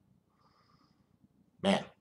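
A short, faint breath through the nose about half a second in, as a man smells a glass of stout, then his voice near the end.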